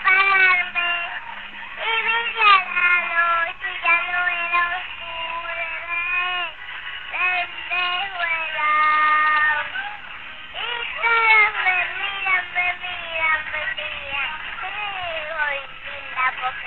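A song: a high singing voice carries a melody of held and gliding notes over faint backing music.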